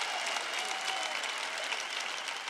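A large audience applauding, a dense even clapping that tapers off slightly toward the end.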